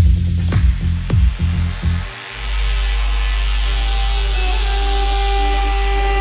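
Live electronic music from synthesizers. The beat and percussion drop out about two seconds in, leaving a steady deep bass drone under high, slowly falling, wavering synth tones.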